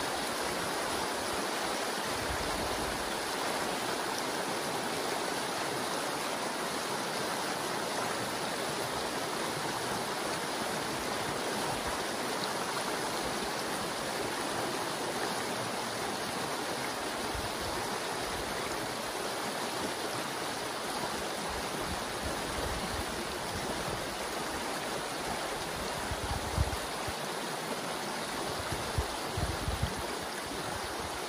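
Creek water rushing steadily through a breach in a beaver dam. A few brief low thumps come near the end.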